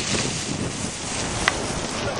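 Wind buffeting the microphone: a steady rushing noise, with a single short click about one and a half seconds in.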